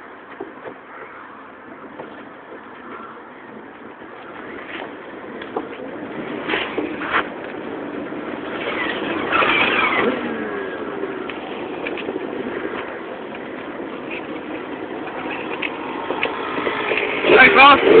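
Jeep TJ driving slowly over a rough off-road trail, heard from inside the cab: the engine runs under a steady noise, with scattered knocks and rattles from the bumps. It grows louder about halfway through.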